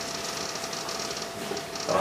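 A pause in a man's speech into a microphone: only a steady low hiss with a faint hum, the hum stopping shortly before the end.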